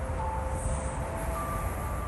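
Steady low rumble of outdoor city background noise, with a few faint thin steady tones over it.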